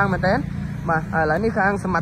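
Speech: a person talking quickly in the street, over a steady low hum.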